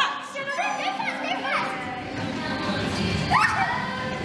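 Children squealing and shouting in play, with high gliding shrieks, over music.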